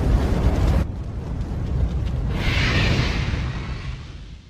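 Cinematic fire-and-rumble sound effect for a logo intro: a deep rumbling roar of flames, with a hissing whoosh swelling about two and a half seconds in, fading away near the end.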